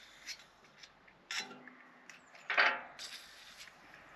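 Light handling noise of a hand tool and lubricant applicator working into a galvanised boat-trailer fitting: a few small metallic clicks and rubs, then a brief hiss near the end.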